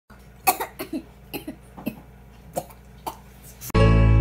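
A girl's short breathy vocal bursts, about seven scattered over three seconds. Near the end, music cuts in suddenly.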